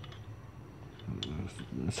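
A few light metallic clicks as a paint spray gun's fluid nozzle is handled and started onto the gun body by hand. A quiet voice comes in during the second half.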